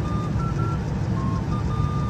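Steady low rumble with faint, short electronic beeps at a few slightly different pitches.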